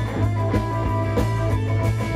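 Rock band playing a short instrumental stretch between sung lines: guitar over a steady bass and drums, with a few drum and cymbal hits.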